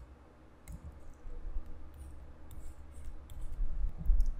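Scattered light clicks and taps from a pen stylus on a drawing tablet, with a few low bumps, as a box is drawn around the written answer.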